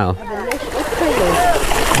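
Water splashing and churning as a dense mass of fish thrashes at the surface of a pond, scrambling for thrown fish food. The splashing sets in about half a second in, under people's voices.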